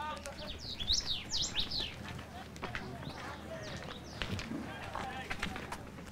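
Outdoor market ambience: a low murmur of background voices, with birds chirping in quick high glides, most busily in the first two seconds.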